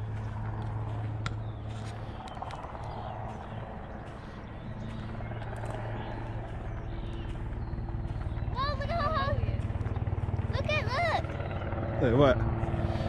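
Helicopter flying overhead: a steady low drone that grows louder through the second half as it approaches.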